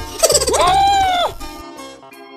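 A cartoon character's high, squeaky cry of fright: one wail that rises and then falls, lasting about a second, over background music.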